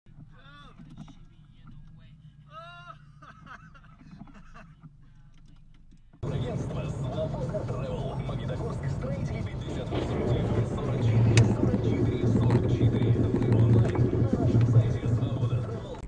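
Faint voices, then about six seconds in a sudden switch to loud, steady car engine and road noise with a low hum, growing somewhat louder toward the end.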